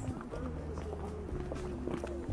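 Faint voices over a low steady rumble, with a few light ticks.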